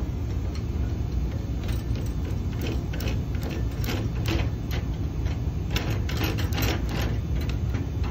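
Light metal clicks and clinks from a dent-pulling bridge as the tension on its pull rod is released and its hooks loosen on the welded keys, over a steady low rumble.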